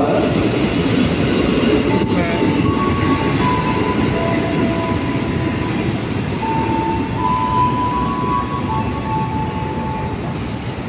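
KRL electric commuter train pulling away along the platform, a steady rumble of wheels on rails that slowly fades. From about three seconds in, steady whining tones join it and shift between a few pitches.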